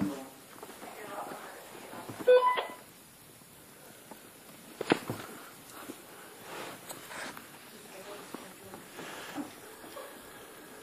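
A short, loud electronic beep about two seconds in, then a single sharp click about five seconds in, over faint low voices and movement.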